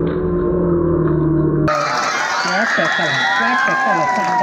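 Low, droning music with a deep sustained tone, muffled and dull, cuts off suddenly less than two seconds in. It gives way to many voices shouting and calling over one another, like a crowd at a match.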